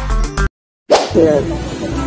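Edited-in whoosh transition effect over an animated logo sting. The audio cuts out completely for about half a second just after the start, then comes back with a sudden onset and a melodic line.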